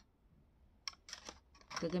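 Two light clicks about half a second apart as a phone in a hard case is handled, followed by a woman starting to speak.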